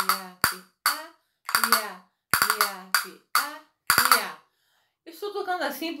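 Flamenco castanets being played: a slow, uneven run of sharp clacks, single strokes and short clusters, about seven in four seconds, each ringing briefly. The playing stops about a second before speech resumes.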